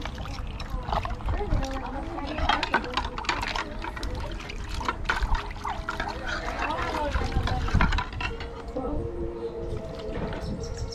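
Water splashing and dribbling in a plastic basin as hands, a small plastic cup and a plastic bowl are dipped and wetted, in irregular short splashes. Voices talk in the background.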